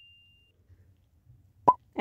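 The ringing tail of a bell-like chime sound effect fading out within the first half-second, then a quiet stretch broken by one short pop near the end.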